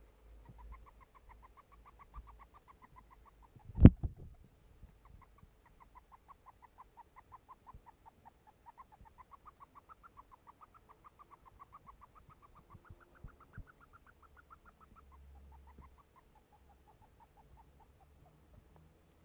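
Syrian hamster making a rapid, rhythmic run of short high squeaks with her sniffing, about six or seven a second, in two long bouts. The owner could find no injury or breathing trouble behind the sound. A single loud bump comes about four seconds in, between the bouts.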